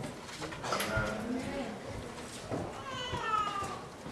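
High-pitched vocal sounds, ending in a falling, whining call near the end.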